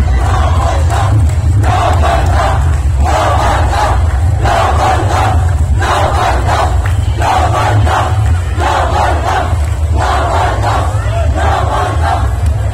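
A large crowd of festival dancers shouting a chant together in celebration, the massed voices rising in a regular beat about once every second and a half, over a steady low rumble.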